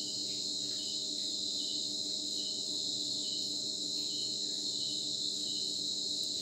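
Night-time chorus of crickets: a steady high-pitched trill, with a chirp repeating a little more than once a second, over a faint steady low hum.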